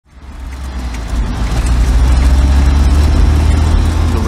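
A deep, low rumble swelling up from silence over about the first two seconds, then holding steady: a cinematic bass drone under an opening logo.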